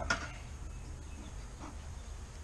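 Bee smoker's bellows giving a short puff of air just after the start and a fainter one later, over a low steady hum.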